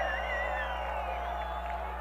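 Stadium crowd noise with music from the stands over a steady low hum, and a wavering held tone at the start.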